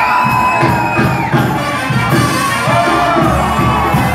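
A live band playing in a hall, with the crowd cheering over the music. A held note ends about a second in, while a steady beat carries on underneath.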